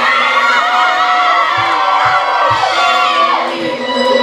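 A crowd cheering and shouting with many high-pitched overlapping voices, over dance music playing through speakers.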